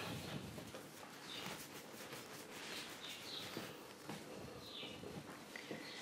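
Faint, soft sounds of hands rolling and shaping leavened dough on a floured steel worktop, over low room noise.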